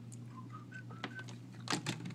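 A Banner DX80 wireless unit powering up after a power cycle: about five short, faint electronic beeps, mostly climbing in pitch, followed near the end by two sharp clicks from handling the unit.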